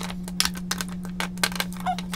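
Lip gloss tubes clicking against one another and a wooden tray as they are set out in a row by hand: a quick irregular series of small clicks and taps.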